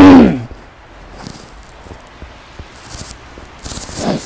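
A woman's short spoken 'tuh' falling in pitch at the very start, then faint soft crunching and rustling of footsteps in fresh snow.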